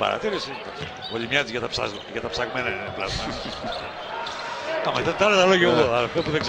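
A basketball being dribbled on the court during live play, short bounces under voices, with a man's voice loudest near the end.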